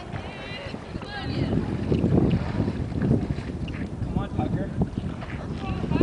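Wind buffeting the microphone in uneven low rumbles, with faint distant voices calling now and then.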